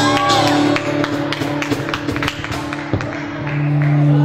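Live acoustic music: an acoustic guitar strummed with cajon beats, a singer's voice holding a note in the first second. The beats stop about two and a half seconds in, leaving held low notes ringing.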